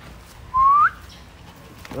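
A person whistles once, a short rising whistle calling the dogs to follow.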